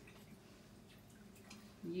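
Faint water sounds from a reusable silk-screen chalk transfer being rinsed in a bowl of water, with a woman's voice coming back in near the end.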